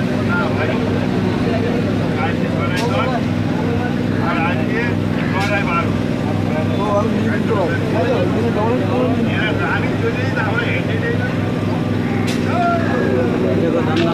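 Electric suburban train's steady hum with a regular low pulsing as it slows, with three sharp clicks along the way. Passengers talk over it.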